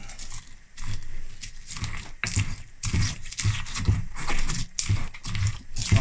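Stone pestle grinding and pounding wild garlic seeds with coarse salt and oil in a stone mortar: a run of irregular gritty scraping strokes with dull knocks, about two a second.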